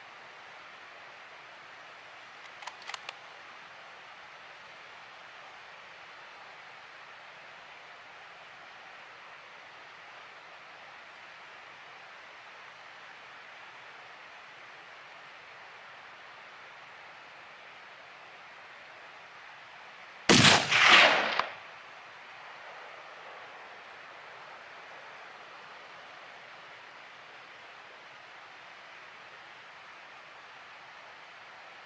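A single rifle shot about two-thirds of the way through, its loud report lasting over a second with several peaks before it dies away, over a steady faint hiss. A few quick faint clicks come near the start.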